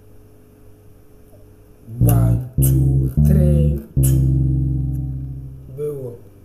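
Electric bass guitar playing a four-note phrase, do-re-mi-re (1-2-3-2), starting about two seconds in; the last note rings on and fades away.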